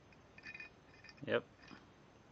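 Faint, short metallic clinks of steel masonry drill bits being handled, with a single spoken "yep" about halfway through.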